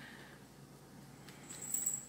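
Fingers working damp soil in a thin plastic container: faint soft rustling, then a brief high-pitched squeak near the end.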